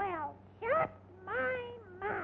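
Three meow-like calls on a cartoon soundtrack. The first falls in pitch, the second is short and rises, and the third rises and then holds.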